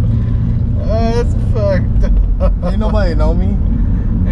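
Steady low rumble of a car's engine and tyres heard from inside the cabin while driving, with two men laughing and talking over it.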